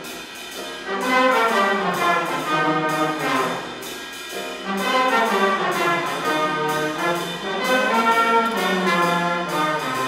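A big band playing: saxophone, trumpet and trombone sections together in harmony over piano and drum kit, the drums keeping a steady beat.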